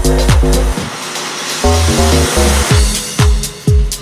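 UK tech-house track: a four-on-the-floor kick drum with chord stabs and bass. About a second in the kick drops out under a wash of noise and a few low bass notes, and the kick comes back a little after three seconds.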